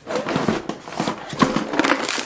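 Clear plastic tackle boxes being handled and set down on a table: a busy run of plastic clattering and knocking.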